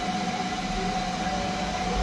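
Steady room noise: an even hiss with a faint, constant hum-like tone, unbroken and without clicks or knocks.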